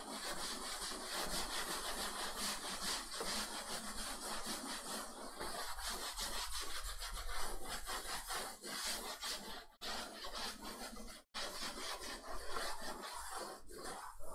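Chalkboard being wiped with a block board eraser: a continuous dry scrubbing of quick back-and-forth strokes across the slate, with two brief pauses about ten and eleven seconds in.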